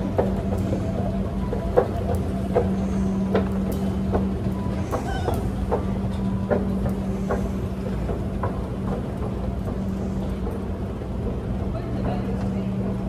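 Escalator running: a steady low machine hum with a light click about every second.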